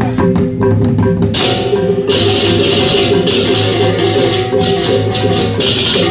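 Balinese gamelan procession music played live: steady metallic gong and keyed-instrument tones with drumming, joined about a second in by a bright, dense high clatter of cymbals that breaks off briefly now and then.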